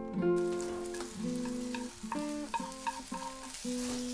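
Acoustic guitar picking a slow line of single notes, with a steady hiss of food frying in a pan underneath that starts a moment in.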